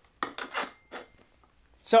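Hardware clatter as two Roland PDX-6 tom pads are fitted onto the rack's metal L-rod tom arms: a sharp click a moment in, a short scraping rub, and a softer click about a second in.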